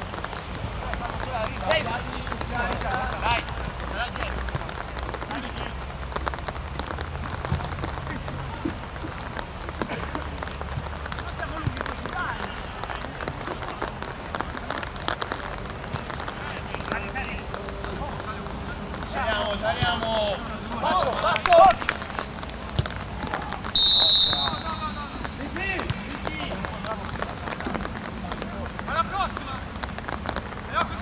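Players shouting to each other across a football pitch, with one short, shrill blast of a referee's whistle late on, the loudest sound.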